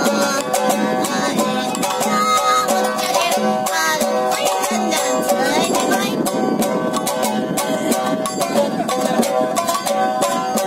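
Street music: a small drum with a white skin struck again and again with a wooden stick, alongside a plucked string instrument playing a tune.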